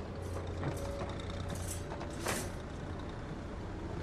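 Film soundtrack background: a steady low rumble with a faint held tone over it, and two short hissing bursts about two seconds in.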